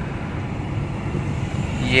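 Steady low rumble of a car driving, road and engine noise heard from inside the cabin.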